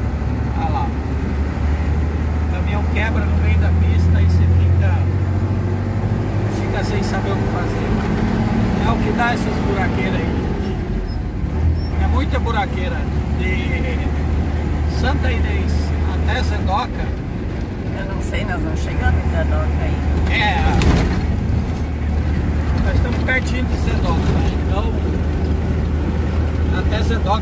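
A truck's engine droning steadily as heard from the cab while driving, with tyre and road noise; the drone swells a little around four seconds in.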